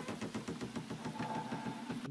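A door creaking slowly open on its hinges in a film soundtrack: a fast, grating run of ticks, joined about halfway through by a steady higher squeal.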